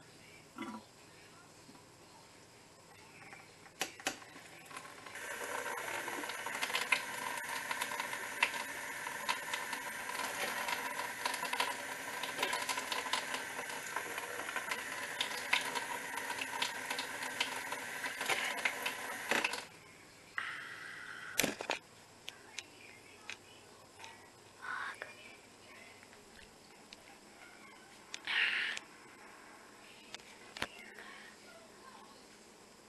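Kitchen tap running for about fifteen seconds, then shut off abruptly; a single sharp knock follows.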